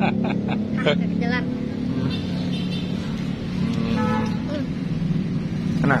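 Steady low hum of a car engine idling close by, with background voices and a few light clicks in the first second.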